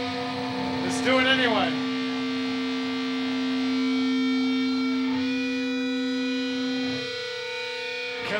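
Distorted electric guitar through an amplifier, holding a steady, ringing chord. A brief wavering voice rises over it about a second in, and the lowest note drops out about seven seconds in.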